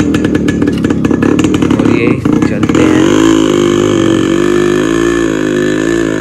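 Yamaha RX100's two-stroke single-cylinder engine running with a rapid, crackling beat. About three seconds in it revs up to a steady, higher note as the bike takes up the strain of towing a tractor on a rope.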